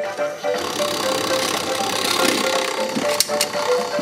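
A cheerful tune plays while the toy crane game's claw mechanism whirs as the claw moves, with two sharp clicks about three seconds in.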